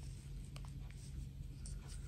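Faint handling sounds of a plastic fashion doll being turned over in the hands: a few light clicks and soft rustles over a low steady hum.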